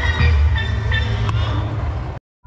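Music playing, with a strong steady bass and held higher notes.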